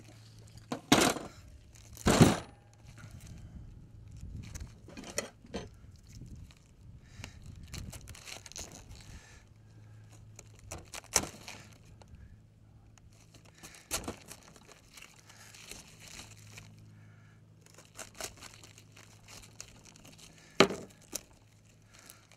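Kitchen knife cutting through a head of green cabbage on a wooden cutting board: crisp crunching and tearing of the leaves, with a few sharp knocks of the blade and cabbage on the board.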